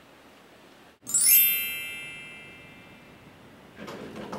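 A chime glissando sound effect: a quick upward sweep of many bell-like tones that comes in suddenly about a second in and rings out, fading over about two seconds.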